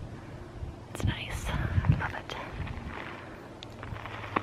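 Wind in the trees and buffeting the microphone, a gusty low rumble, with a few faint clicks and a soft murmured voice under it.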